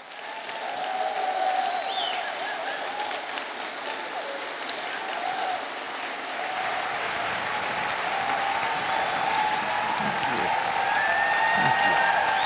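Large audience applauding, the applause swelling over the first second and then holding steady.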